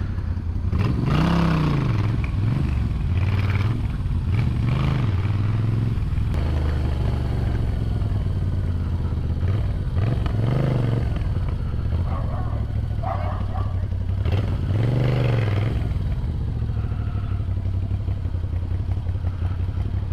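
Moto Guzzi V7's air-cooled transverse V-twin running at low speed, the revs rising and falling about five times as the throttle is opened and closed.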